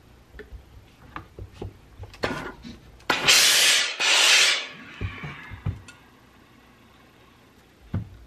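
Steam iron pressing a knit neckband over a tailor's ham, giving two hissing bursts of steam, each just under a second, about three and four seconds in. Light taps and fabric rustling from handling come before and after.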